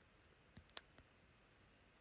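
Near silence, broken by a few faint clicks clustered about half a second to a second in.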